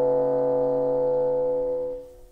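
Solo bassoon holding one long, steady note that cuts off at the very end.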